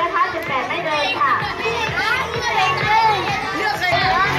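Many children's voices chattering and calling out at once, with music playing underneath.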